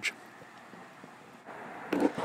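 Faint steady background noise with no distinct source, a little louder about one and a half seconds in.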